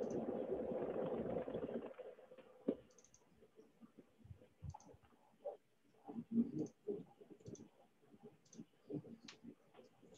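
Computer mouse clicks and light keyboard taps, scattered and irregular, with a soft rushing noise for about the first two seconds.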